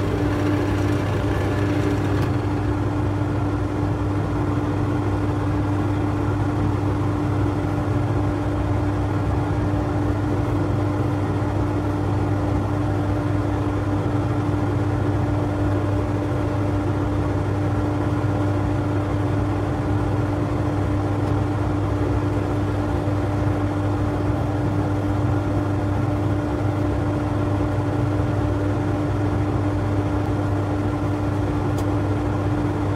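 Wood lathe running at a steady speed, a constant motor hum with the oak handle spinning. A brighter hiss from the hands working at the spinning piece stops about two seconds in.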